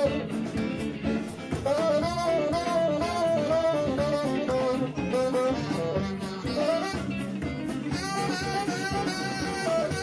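Live blues-rock band playing an instrumental section: a saxophone solos in short, wavering phrases over electric guitar, bass and drums. The sax line pauses briefly about halfway through and again near the end.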